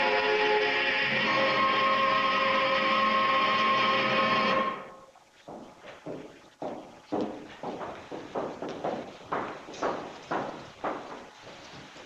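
Choir music with long held chords that cuts off abruptly about five seconds in, followed by a run of soft, evenly spaced thuds about two to three a second.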